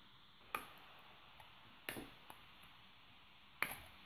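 Plastic snap-on back cover of a Blu Diva 2 feature phone being prised off by hand, its retaining clips releasing with a few sharp clicks spread over the few seconds, the last near the end the loudest.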